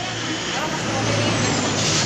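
Road traffic passing close by: a vehicle's engine and tyre noise swelling louder, with a thin high whistle falling in pitch and a brief hiss near the end.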